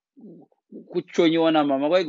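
A man's voice: a few soft murmurs, then about a second in a loud, drawn-out vocal sound held at a nearly steady pitch, not heard as words.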